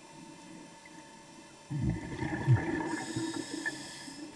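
Scuba diver exhaling through a regulator underwater: a burst of bubbles rumbling and gurgling, starting suddenly a little under two seconds in after a quiet stretch.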